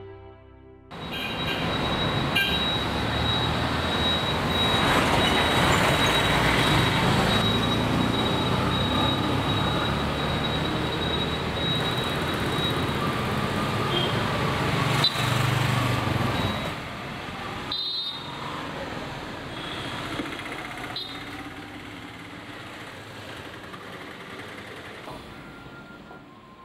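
Road traffic noise, a dense steady wash of street sound that starts about a second in, with a thin high steady tone over it for several seconds. About seventeen seconds in it drops to a quieter background hum.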